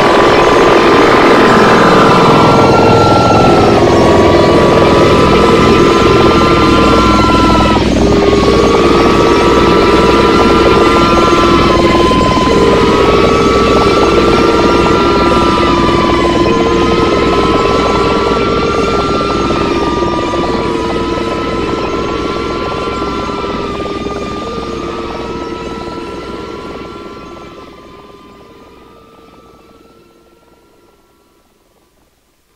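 Harsh noise electronic music: a dense wall of hiss and rumble with looping short arching tones up high and a repeating two-note stepping figure lower down, a falling sweep in the first couple of seconds. It fades out steadily over the last several seconds as the track ends.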